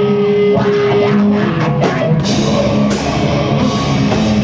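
Live rock band playing: electric guitar and bass hold long notes with a few drum hits, then the drum kit comes in fully with cymbal crashes about halfway through.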